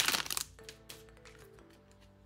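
Foil wrapper of a trading card pack crinkling and tearing open, loudest in the first half second. A few light clicks follow as the cards are handled.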